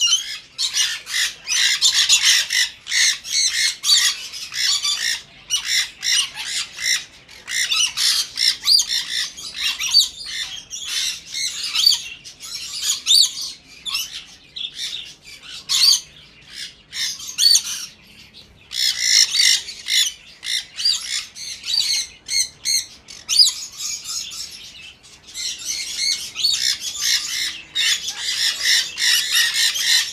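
A flock of caged budgerigars and other small parrots calling over one another: a dense, unbroken run of short, high squawks and chirps, with a brief lull about halfway through.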